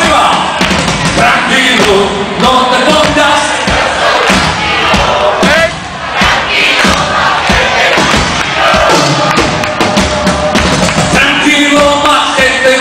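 Loud live party-band music through the stage sound system, with a singer and a large crowd yelling and singing along; the sound dips briefly just before the middle.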